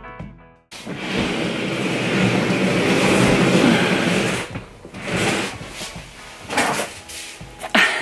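A chest of drawers, still full, being dragged and shoved across the floor. A loud scraping noise runs for about four seconds, followed by three shorter scrapes.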